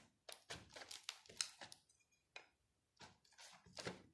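A Mora knife's blade slitting and scraping along the plastic shrink-wrap of a cassette box: a quick series of short, faint scraping crackles with brief pauses between them, and a short gap about two seconds in.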